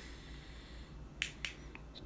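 Clicks of a handheld LED flashlight's switch as it is turned on: two sharp clicks a little over a second in, a quarter second apart, then a fainter one.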